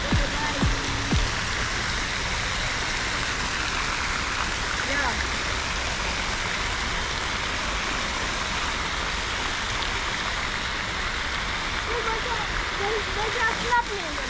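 Water fountain jets splashing into an outdoor pool: a steady rushing hiss. Faint voices come in near the end.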